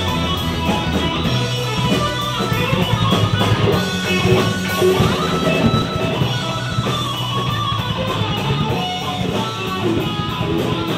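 A live rock band playing, with an electric guitar prominent over the bass.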